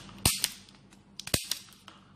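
Sharp plastic-on-metal clicks as a Krone-type telephone terminal module is handled and fitted onto a metal back-mount frame: two loud snaps about a second apart, with a few lighter clicks between them.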